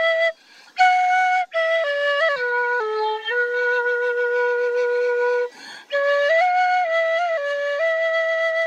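Solo side-blown flute playing a slow melody of long held notes, broken twice by short breaths. It steps down to a low note held for about two seconds in the middle, then climbs back up.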